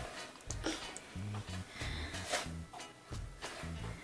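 Quiet background music with a steady bass line, over faint scratchy rustles of a croquette being rolled in dry breadcrumbs on a plastic tray.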